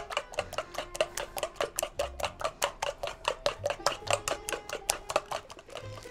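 A spoon beating eggs in an enamel bowl, striking the bowl's side in a quick, even rhythm of about six or seven clicks a second that stops just before the end.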